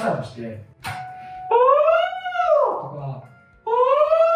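A man's voice singing vocal sirens on an 'oh' vowel in high falsetto range: two glides that each rise and then fall in pitch, about a second and a half long, with a brief steady note before the first. It is a falsetto-onset exercise for building mixed voice.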